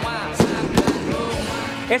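A firecracker bomb of the kind called '12 por 1' going off: several sharp bangs in an irregular string, with music underneath.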